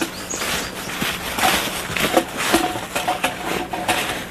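Several people walking through dry leaves: irregular footsteps crunching and rustling.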